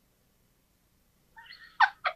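Silence, then near the end a woman's high squeaky laugh breaking into a few short cackles.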